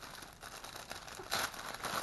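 Clear plastic packaging bag crinkling as it is handled and opened, faint at first and louder about halfway through.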